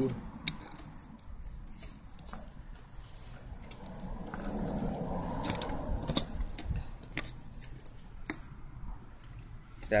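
Small clicks and rustles of hands handling a motorcycle's wiring harness: wires and plastic connectors being moved and fingered, with one sharper click about six seconds in.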